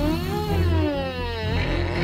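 A long, drawn-out suspicious 'hmmm' from a cartoon voice, rising then falling in pitch, over background music.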